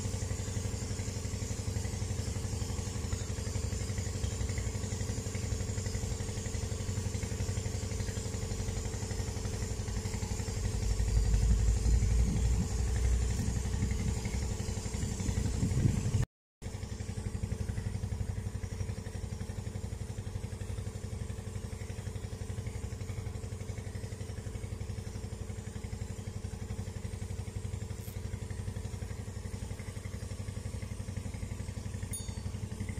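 An engine running steadily, a constant low hum made of several steady tones. It grows louder and rougher for a few seconds near the middle, then cuts out for an instant at an edit and comes back at its earlier level.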